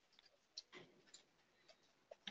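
Near silence, broken by a few faint, scattered clicks.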